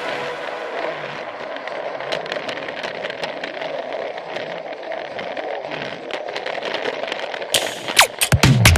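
Plarail toy train running along plastic track, its small motor whirring under a fast, irregular crackle of clicks from the wheels and track joints.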